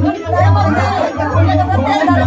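Several women's voices talking over one another, with music playing a steady bass beat underneath.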